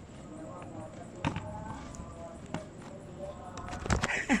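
Faint, indistinct voices with a few sharp knocks, about 1.3 and 2.5 seconds in, and a louder bump near the end.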